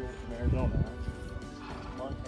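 A horse gives a short, low call about half a second in, the loudest thing here, over steady background music.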